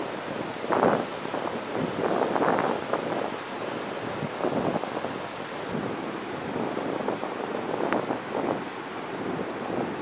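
River rapids rushing steadily, with irregular gusts of wind buffeting the microphone.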